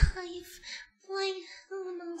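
A man's voice moaning in a high, falsetto-like pitch: a string of short, drawn-out moans, each held on one note, with brief pauses between them. A brief low thump on the microphone at the very start.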